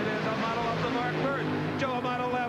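Two Top Fuel dragsters, supercharged nitromethane-burning V8s, running side by side at full throttle down the drag strip, heard as a steady rushing noise under a commentator's voice.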